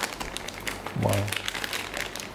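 Clear plastic piping bag crinkling as it is handled, a string of small crackles and rustles.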